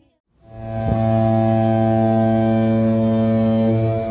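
A moment of silence, then a deep, steady droning tone with many overtones swells in within about half a second and holds: a cinematic logo sting for a studio's logo.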